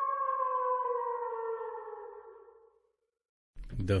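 A logo sting: a sustained ringing tone of several pitches at once that slides slowly down in pitch and fades away over the first three seconds. A man starts talking near the end.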